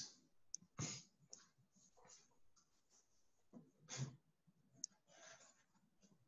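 Near silence: room tone with a few faint, short clicks and soft noises.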